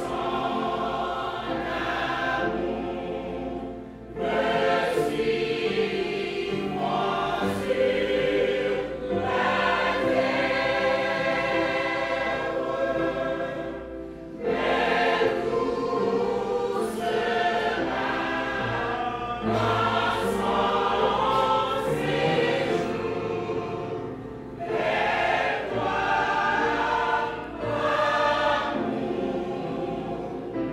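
Church choir singing, its phrases broken by brief dips about every ten seconds.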